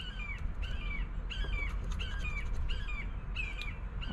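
A bird calling over and over in short, falling squawks, about two a second.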